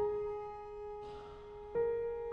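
Piano played slowly in a classical piece: a note struck at the start and another about three-quarters of the way through, each left to ring and fade.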